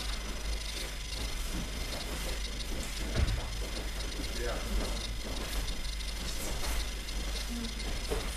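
Judo training hall during standing sparring: a steady background of room noise and faint voices, with one thump about three seconds in.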